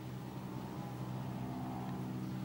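A steady, low, engine-like mechanical hum with a faint higher tone over it.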